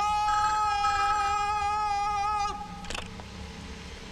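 A man's voice swoops up into one long, high, held note with a slight waver, sustained for about two and a half seconds before cutting off. A short click follows about three seconds in.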